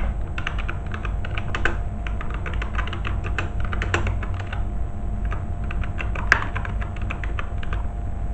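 Typing on a computer keyboard: quick, irregular key clicks over a low steady hum, with one sharper click a little past six seconds in.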